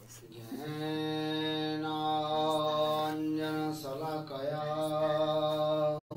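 A single voice chanting a mantra as one long syllable held at a steady pitch. The tone wavers briefly a little past the middle and cuts off abruptly at the end.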